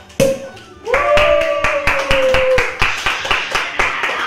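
A sparkling-wine bottle's cork pops just after the start, then several people clap steadily while someone gives a long held cheer.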